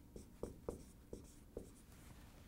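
Dry-erase marker writing on a whiteboard: about five short, faint strokes.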